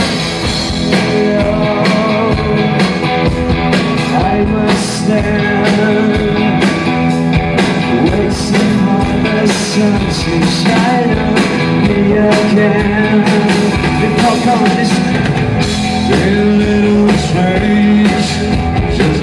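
Rock band playing live: electric guitars over a drum kit keeping a steady beat.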